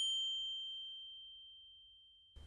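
A single high, bell-like ding that rings out on one clear tone and fades away over about two seconds, a chime sound effect marking a title card.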